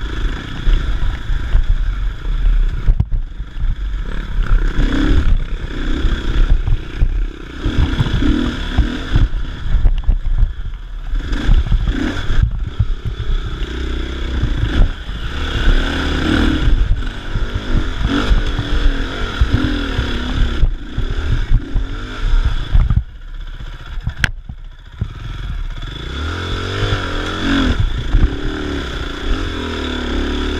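Dirt bike engine heard close up from the rider's own bike, its revs rising and falling over and over as it is ridden up a rough, rocky trail. The engine goes quieter for a moment a little over twenty seconds in, then revs up again.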